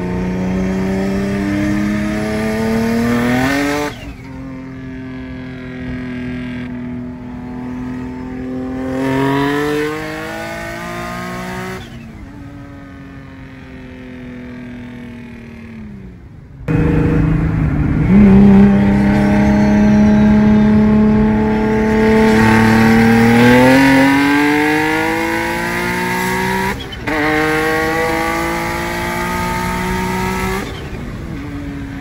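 Car engine under hard acceleration: its pitch climbs, drops as it changes gear, then falls away as it slows. About 17 seconds in, a louder run begins and climbs again through another gear change.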